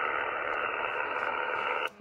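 Steady receiver hiss from a single-sideband radio's speaker, heard between overs while waiting for the other station to reply, with a few faint steady tones in the static. It cuts off suddenly just before the end, as the microphone is keyed to transmit.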